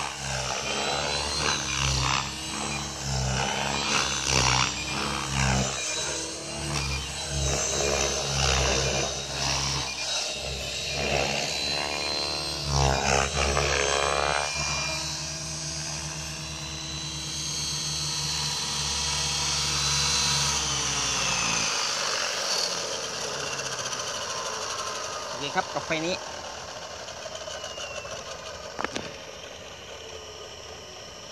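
Align T-Rex 550E electric RC helicopter flying: the motor and rotor blades whine and buzz, rising and falling in pitch as the load shifts through aerobatic flight, then steadier. About two-thirds of the way in the low rotor hum stops as it lands and spools down, leaving a fainter high whine.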